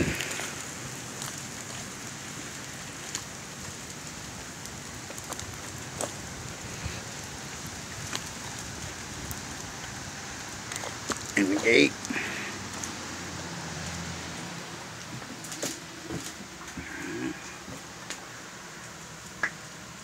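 Steady rain falling, an even hiss with a few scattered clicks and knocks.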